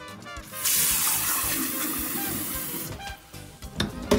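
Kitchen tap running into a glass pitcher, filling it with water over drink-mix powder. The stream starts about half a second in and eases off near three seconds. Background music plays underneath.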